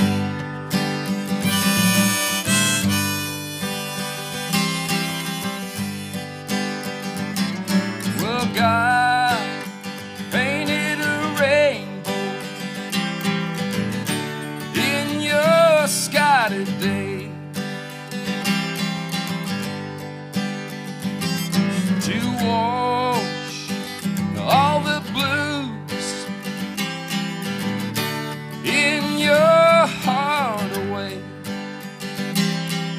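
Acoustic guitar strummed with a harmonica played in a neck rack, a solo folk performance. The harmonica plays phrases with bent, wavering notes over the steady chords.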